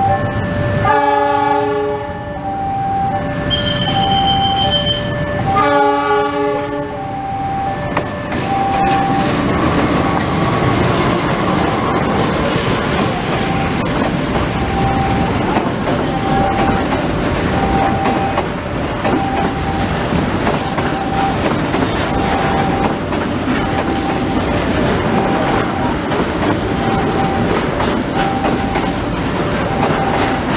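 A level crossing alarm dings steadily in two alternating tones throughout. A diesel locomotive's horn blows twice in the first seven seconds. From about eight seconds in, Pertamina tank wagons rumble and clatter past close by, wheels clicking over the rail joints.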